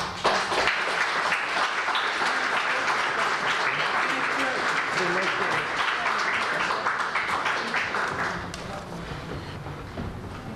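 Audience applauding, starting at once and dying away after about eight seconds.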